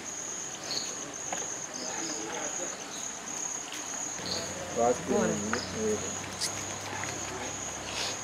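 Night insects chirring in a steady, high-pitched trill, with low voices talking briefly about halfway through.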